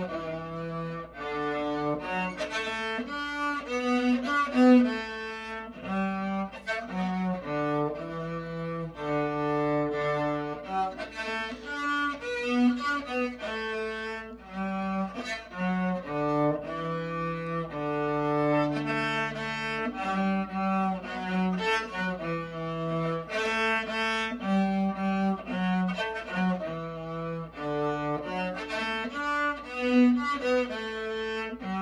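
A solo bowed string instrument in the cello range playing a slow single-line melody of sustained notes.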